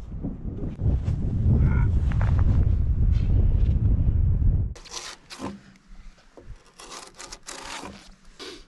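A loud low rumble for the first four and a half seconds, then a draw-knife-style bark knife scraping bark off a felled log in repeated short strokes.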